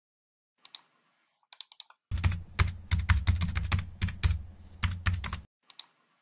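Computer keyboard typing: a few scattered keystrokes, then a fast run of keys from about two seconds in to about five and a half seconds, with a low rumble underneath, then a couple more keystrokes.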